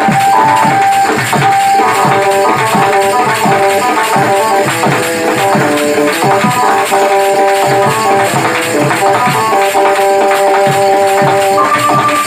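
Live instrumental Desia folk music, loud and amplified: an electronic keyboard plays a melody of held, stepping notes over a busy rhythm of hand drum and metal cymbals.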